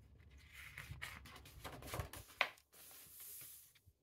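A page of a hardback picture book being turned by hand: faint paper rustling and handling, a sharp tap about two and a half seconds in, then a soft swish of paper near the end.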